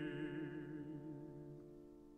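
Baritone voice holding the last note of a phrase with a slow vibrato over a sustained piano chord, in a classical art song. The voice fades out about a second in, leaving the piano chord dying away softly.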